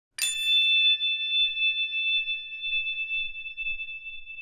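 A single bright bell-like ding, struck once just after the start and left to ring out, its highest overtones dying away first while a clear high tone lingers.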